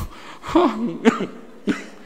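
A man's short throaty vocal sounds, two brief voiced bursts close to a microphone, with a sharp click at the start and another near the end.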